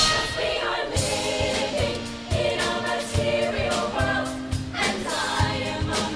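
Show choir singing in harmony over a band, with a steady drum beat underneath.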